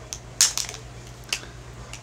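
A few short handling noises, small clicks and rustles, the loudest about half a second in, over a faint steady hum.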